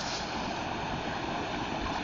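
Water rushing steadily over a low weir and through white-water rapids.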